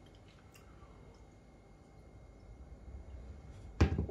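A stainless steel travel mug set down on a wooden table: a quiet stretch, then one sharp knock near the end.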